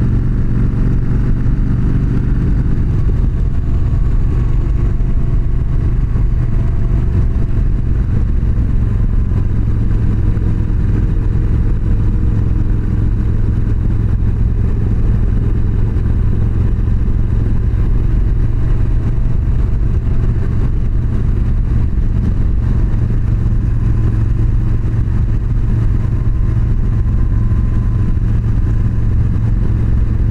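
Yamaha V Star 1300's V-twin engine running steadily while cruising at road speed, its note drifting only slightly up and down.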